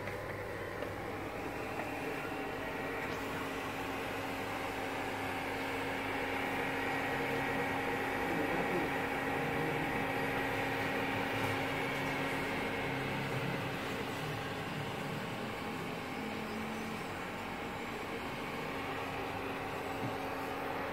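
A steady machine hum with a few constant tones over a faint hiss, swelling slightly in the middle.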